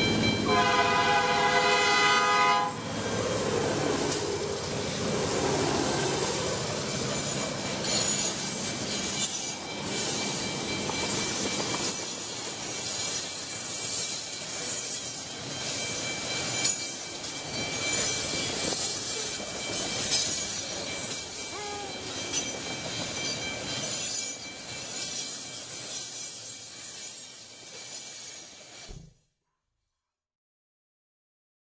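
Freight train passing a railroad grade crossing. The locomotive's horn sounds one blast of about two seconds, starting about a second in, followed by the rolling rumble and clatter of the cars going by, with the crossing bell ringing steadily. The sound cuts off suddenly just before the end.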